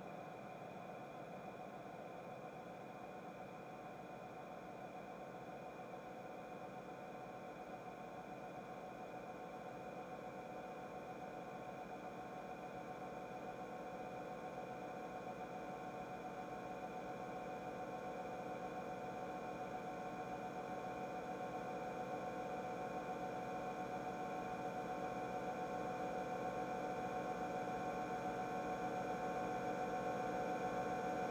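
Airwindows Galactic2 reverb plugin with its Sustain set near full, its tail feeding back on itself into an endless drone of steady ringing tones that slowly swells louder.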